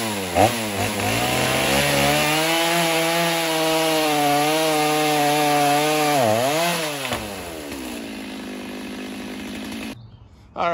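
Gas chainsaw blipped a few times, then held at full throttle cutting through a sawmill slab for about five seconds. Its pitch dips and recovers near the end of the cut, then it drops to a lower, quieter steady note and cuts off suddenly near the end.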